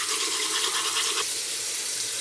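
Toothbrush scrubbing teeth: steady brushing against teeth with a mouthful of toothpaste.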